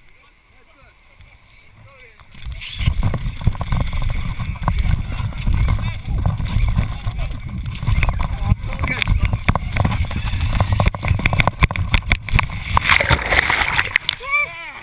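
A person sliding down a wet plastic-sheeted water slide, heard from a helmet camera: from about two and a half seconds in, a loud rushing and rumbling of water, wet plastic and wind buffeting the microphone, with many short crackles, running on until the plunge into the pool at the bottom near the end.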